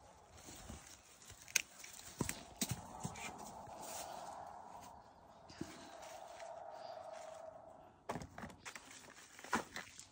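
Leaves rustling with sharp snaps and knocks as bitter melon vines are handled and the fruit picked, over a faint steady hum from about two to eight seconds in.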